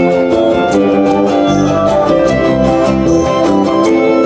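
Live acoustic band playing an instrumental passage on acoustic guitars, flute and violin, without a drum kit. Held melody notes run over a steady strummed rhythm.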